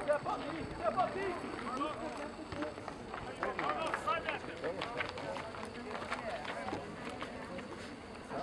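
Indistinct, overlapping shouts and calls from several people, soccer players and onlookers, carrying across an open field, over a steady outdoor background noise.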